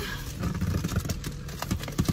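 Irregular light clicks and rustling from objects being handled inside a car cabin, over a low steady rumble.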